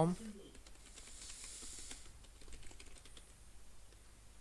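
Typing on a computer keyboard: faint, irregular key clicks, with a brief soft hiss about a second in.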